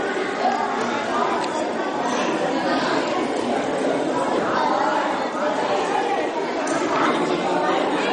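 Steady background chatter of several people talking at once, with no single voice standing out.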